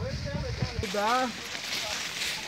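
Dry corn stalks and leaves rustling as people push through a standing cornfield carrying sacks of ears, with a voice calling out over it about a second in.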